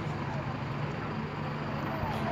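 Vehicle engine idling with a steady low hum amid street noise, with voices in the background.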